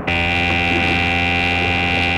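Clock radio alarm buzzer going off: a steady electric buzz that starts abruptly and holds at one pitch.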